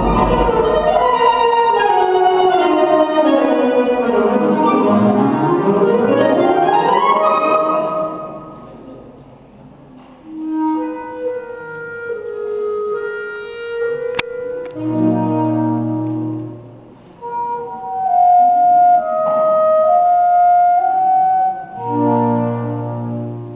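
Concert wind band of clarinets, flutes, saxophones and brass playing: a loud full-band passage whose lines sweep down in pitch and back up over the first eight seconds, then a drop to a quiet, sparse section of held chords and woodwind melody lines.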